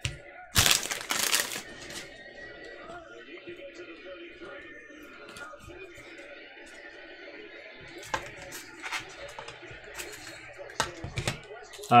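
A crinkly rustle of a torn-open trading-card pack wrapper being handled, lasting about a second, about half a second in. After it, faint background music.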